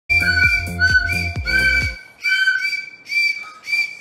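Toy whistle blown in short repeated toots, each a steady high shrill note, coming a little under a second apart. Under the first two seconds there is also loud low-pitched music.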